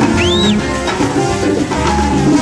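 Live salsa band playing, with bass and percussion. Near the start a short whistle rises and falls once over the music.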